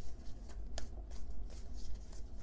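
Tarot deck shuffled by hand: soft, irregular riffling and brushing of cards, over a low steady hum.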